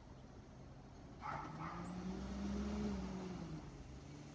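Garbage truck's diesel engine revving up and back down as the truck pulls forward, with a short hiss about a second in.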